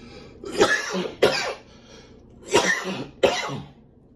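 A man coughing: two double coughs, each pair a quick cough-cough, about two seconds apart.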